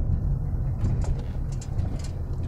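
Steady low rumble of engine and road noise inside a moving car's cabin on a slightly rough road, with a couple of faint light knocks about halfway through.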